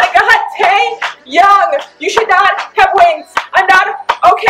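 A woman's excited wordless vocalizing: loud, rapid squeals and yells in short bursts, several a second, with wavering pitch.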